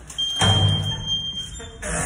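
A steady high electronic beep lasting just over a second from an entrance door's lock release, with a loud thud about half a second in as the door is pushed open.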